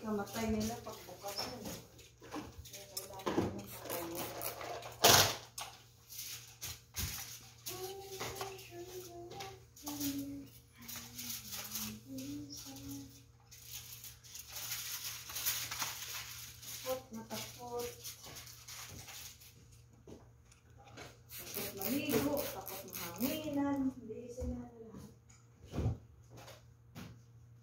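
An electric iron sliding and rustling over cloth on an ironing board, with a sharp click about five seconds in, under a steady low hum. A voice speaks quietly off and on.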